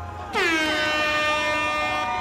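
Air horn blast that starts about a third of a second in with a quick drop in pitch, then holds a steady tone for well over a second.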